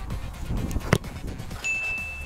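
A football kicked once, a single sharp thud about a second in, followed by a short steady high-pitched ding, an edited scoreboard sound effect marking the goal, over background music.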